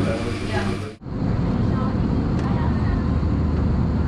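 Steady airliner cabin noise in flight: a constant low hum with an even rush of air, starting abruptly about a second in.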